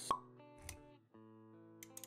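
Sound effects for an animated intro over soft music: a sharp pop just after the start, a low swell a little later, then held music notes.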